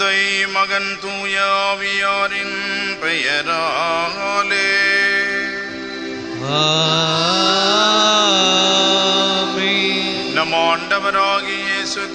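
A voice singing a slow, ornamented sacred chant over steady held keyboard notes, with a long held note in the middle.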